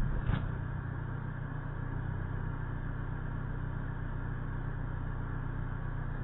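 Car engine idling, a steady low hum heard from inside the cabin through the dashcam's microphone while the car stands still, with a brief knock about a third of a second in.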